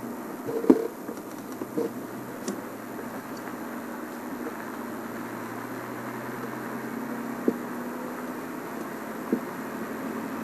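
Safari game-drive vehicle's engine running steadily as it drives slowly along a dirt track, with a few short knocks and bumps, the sharpest about a second in.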